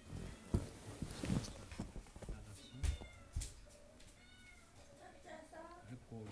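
A cat meowing several times in short, high calls, mixed with a few sharp clicks and rustles, the loudest about half a second in.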